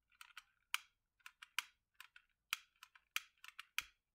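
A long-nosed utility lighter clicked over and over, about a dozen sharp, irregularly spaced clicks of its spark igniter, as it is worked to light a candle.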